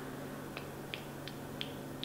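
Faint, short high-pitched clicks, about two or three a second and beginning about half a second in, over a steady low room hum.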